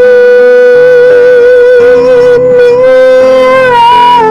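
A woman singing a slow song, holding one long note with a slight waver near the end over an accompaniment whose chords change beneath it.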